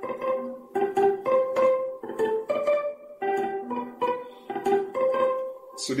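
Clean electric guitar playing a highlife solo phrase: single picked notes, a few a second, each with its own sharp attack and a short ring.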